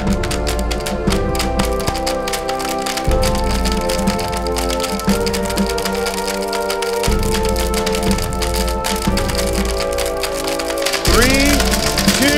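KitchenAid blender running with hard plastic toy army men rattling and clattering around the jar, under sustained music chords that change about every two seconds. The pieces are barely broken up.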